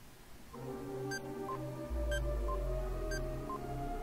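Quiz countdown-timer music: held synth tones with a short beep about once a second, and a deep bass tone joining about two seconds in.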